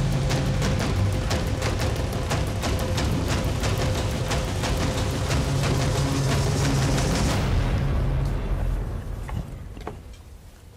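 Dramatic background music with a low sustained bed and rapid, pounding percussion hits, fading out over the last couple of seconds.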